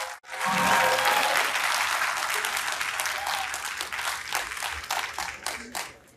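Audience applauding, starting suddenly at full strength and slowly dying away until it stops near the end.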